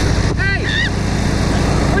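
John Deere riding lawn mower's engine running steadily, heard close up from the seat.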